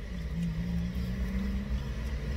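Steady low rumble and hum of an idling car, heard from inside the cabin.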